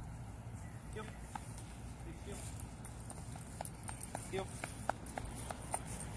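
Light metallic clicks and clinks, a few a second in an uneven rhythm, starting about halfway through, from a dog's leash and collar hardware as handler and dog walk off, over a steady low outdoor rumble.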